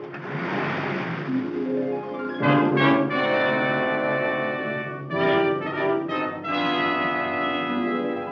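Dramatic orchestral film score with brass. A brief noisy swell leads into held chords that are struck about two and a half seconds in, again just after five seconds and once more about a second later.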